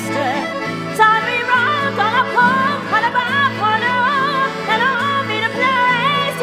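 A woman singing with a wide vibrato over a piano accordion's sustained, held chords.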